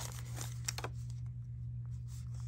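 Paper envelopes of patterned cardstock being handled and shifted, with a few short rustles and crinkles in the first second. A steady low hum runs underneath.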